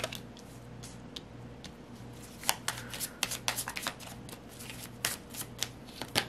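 Tarot cards handled and shuffled by hand on a table: a card set down at the start, a few light clicks, then a quick run of sharp card snaps and slaps from about halfway through.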